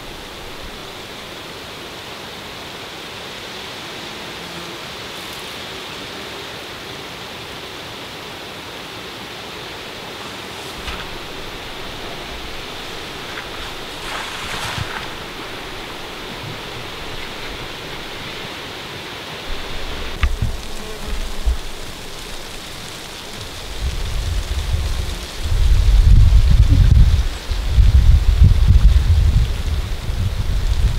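Steady outdoor hiss, then from about two-thirds of the way in, irregular low rumbling gusts of wind buffeting the microphone, loudest near the end.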